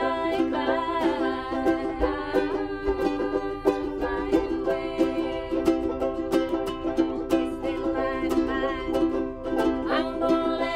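Several ukuleles strummed together in a steady rhythm, with voices singing along.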